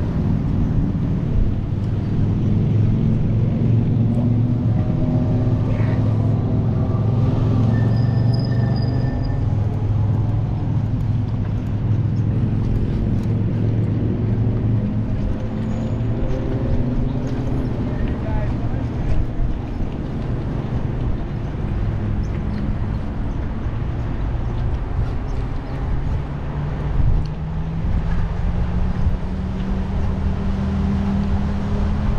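Steady low drone of road traffic and riding noise, with tones that slowly rise and fall as vehicles pass and one that climbs steadily near the end.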